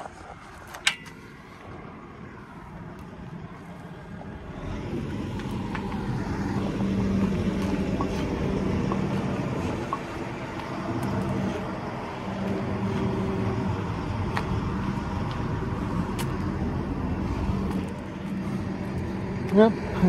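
A heavy truck's diesel engine running steadily. It comes up about four and a half seconds in and holds until near the end, with a single knock about a second in.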